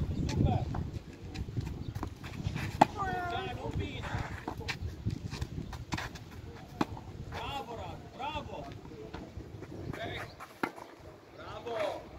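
Tennis ball struck by rackets in a rally: sharp pops roughly every two seconds, the loudest about three seconds in, with voices calling in the background.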